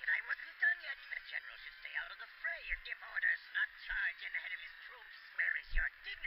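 Thin, tinny dialogue from an anime episode playing in the background, with no low end, like a voice over a radio.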